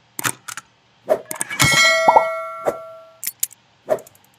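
Sound effects of a YouTube channel-intro subscribe animation: a run of sharp clicks and knocks, then a bright bell ding about a second and a half in that rings out for over a second, followed by a few more clicks.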